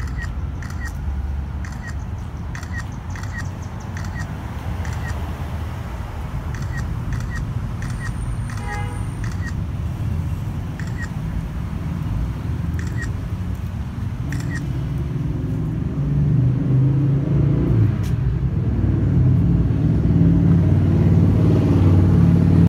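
Steady rumble of street traffic, with a motor vehicle growing louder over the last several seconds. Short sharp clicks come every second or so through the first two-thirds.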